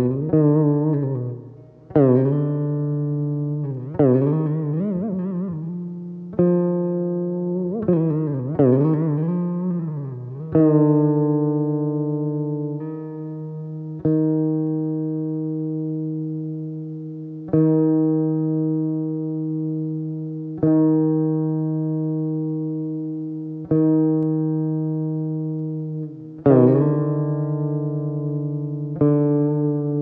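Saraswati veena played solo and slowly, one plucked note every two to three seconds over a low steady drone. In the first ten seconds the notes bend and slide in pitch; after that they are held at one pitch and left to ring and fade.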